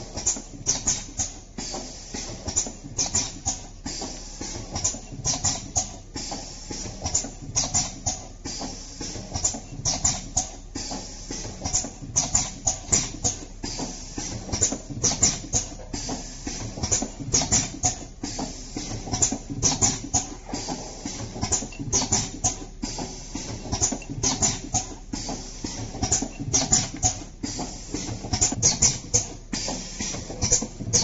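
Honey sachet packing machine running, with rapid, irregular clicking and clacking from its moving parts, several clicks a second over a steady mechanical hum.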